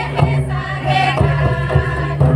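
Adivasi folk song sung by a group, with two-headed barrel drums beating along in a steady rhythm.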